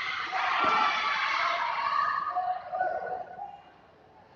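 Spectators in a large hall shouting and cheering all at once during a pencak silat bout, dying away in the last second.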